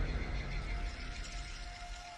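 Trailer sound design: a deep rumble dying away, with a faint thin held tone coming in about halfway through.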